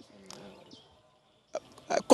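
A pause in a man's speech. A faint voice trails off at the start, then there is near quiet for about a second. A short breath or mouth sound comes about a second and a half in, and loud speech starts just before the end.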